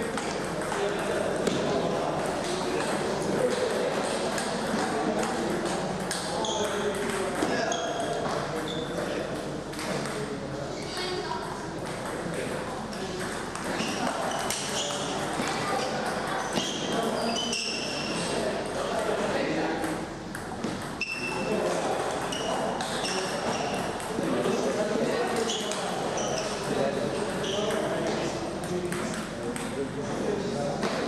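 Table tennis ball being struck back and forth, clicking off the bats and the table in short runs of rallies with gaps between points.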